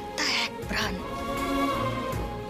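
A woman crying: a sharp breath and a short wavering sob, over background music with a held note.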